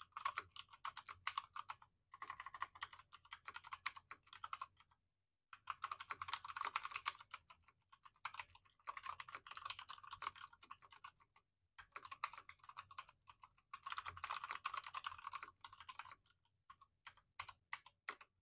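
Typing on a Wombat Ginkgo Pro mechanical keyboard with brown switches: rapid key clacks in runs of a few seconds, broken by short pauses, thinning to a few last keystrokes near the end.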